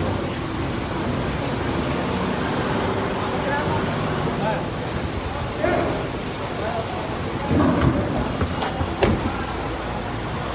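Steady mechanical hum of workshop and street noise, with brief snatches of voices in the background and a few light knocks near the end.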